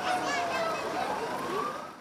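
Fire engine siren wailing, its pitch falling slowly and then rising again.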